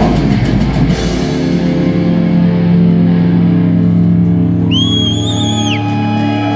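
Live heavy metal band with drum kit and distorted guitars playing fast for about a second, then giving way abruptly to a steady sustained chord. A high whining tone swells in and drops away near the end.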